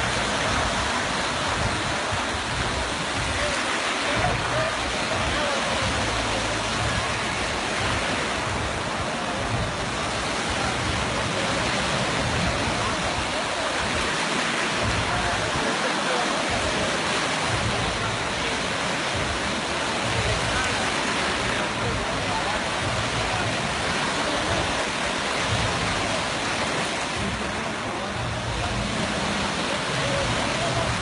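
Small sea waves breaking and washing at the shoreline: a steady rushing surf, with wind buffeting the microphone.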